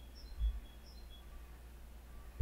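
Quiet room tone with a steady low hum. There is a soft low bump about half a second in, and a few faint, short high chirps early on.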